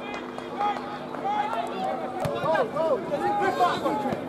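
Men's voices shouting across a football pitch, several overlapping calls that grow louder in the second half, with a sharp knock about two seconds in. A steady background hum stops at about the same time.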